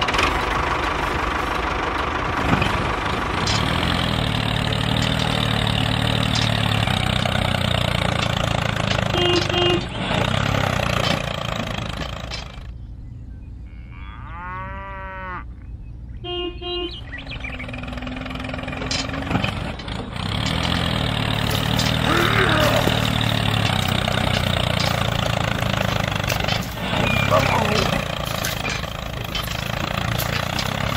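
Miniature model tractor's small engine running in two long stretches, with a quieter gap in the middle that holds a wobbling, arching added sound effect and a few short beeps.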